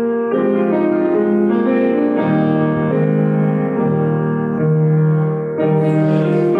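Piano playing a slow hymn tune in held chords, the harmony changing every second or so.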